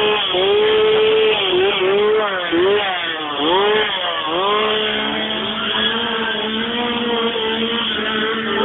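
A small engine running and revving, its pitch swooping down and back up several times, with a steady lower hum beneath it.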